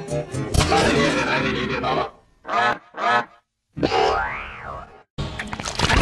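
Garbled, heavily pitch-shifted and layered video-effect remix of a movie clip's voice and sound, coming out as dense honk-like tones. A little past two seconds in it breaks into two short bursts, then a brief silence, then a tone that rises and falls, and after another short gap the dense sound starts again near the end.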